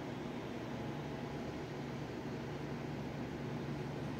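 Steady background hiss with a faint low hum, with no distinct events.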